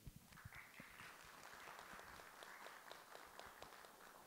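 Faint applause from a small group of people. Individual claps stand out within it, and it fades away near the end.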